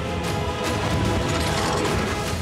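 TV title-sequence theme music with mechanical clicking and ratcheting sound effects and sharp hits laid over it.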